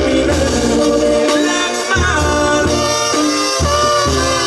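Live Mexican banda brass music: trumpets and trombones play sustained melodic lines over a sousaphone bass part that moves in short, separate notes.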